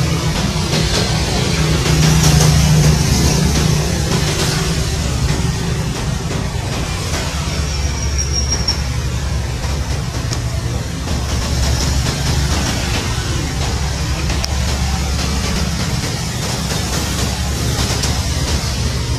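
Military utility helicopters running on the ground with rotors turning, a dense steady rotor and turbine sound with a rapid low beat, slightly louder a couple of seconds in.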